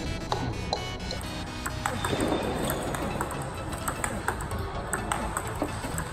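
Table tennis ball clicking several times a second, bouncing on the table and struck by the paddle in repeated forehand flips, over background music.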